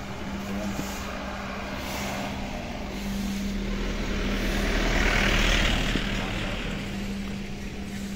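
A motor vehicle passing on the road, swelling to its loudest about five seconds in and then fading, over a steady low hum.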